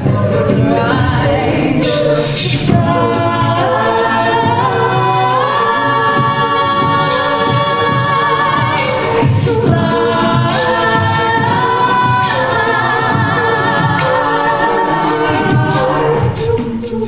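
Mixed-voice a cappella group singing into handheld microphones, several voice parts holding long sustained chords under a lead line, with a steady beat of vocal percussion.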